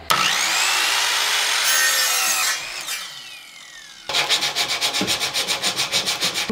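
Ryobi miter saw starting with a rising whine and cutting through an oak 1x2 at a 45-degree bevel, then its blade spinning down with a falling whine. About four seconds in, a quick rhythmic rubbing begins, about eight strokes a second.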